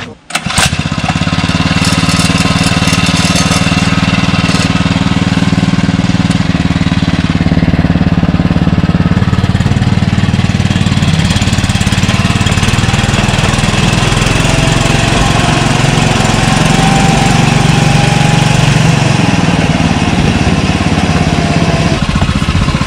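Small engine of a miniature railway locomotive running steadily as the train travels along the track, heard from the carriage behind it. The drone begins abruptly about half a second in and stays at an even level throughout.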